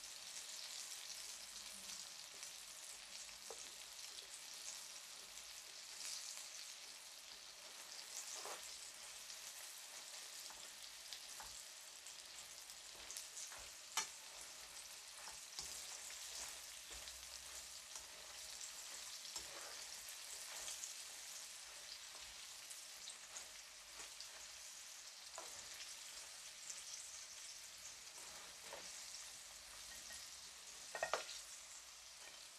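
Cornstarch-coated beef strips sizzling steadily in hot oil in a frying pan, in the second fry to crisp them. Now and then metal tongs click against the pan as the pieces are turned, with one sharp click about halfway through.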